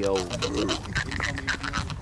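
Jaw harp plucked in a quick, even rhythm, the player shaping its overtones with the mouth. About half a second in the steady drone drops away, leaving quieter plucks and a few high overtones.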